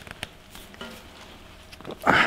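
A few faint clicks and light knocks from the shaft coupling and latching lever of an old flexible-shaft grinding machine being handled, as the shaft is switched between disengaged and pinned in.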